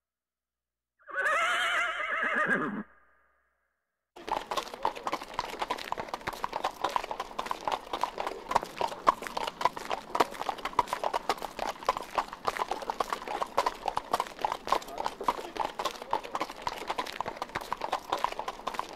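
A horse whinnies once for about two seconds, the call wavering and dropping in pitch at its end. After a short pause its hooves start to clip-clop at a trot: a quick, steady run of hoof strikes that goes on without a break.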